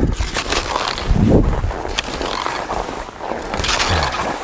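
Cross-country skis sliding and scraping on a groomed snow track, with the crunch of ski poles planted in the snow every second or so, heard close up on an action camera.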